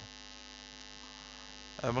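A steady electrical hum, an even buzzing drone made of several constant tones, with a man's voice starting just before the end.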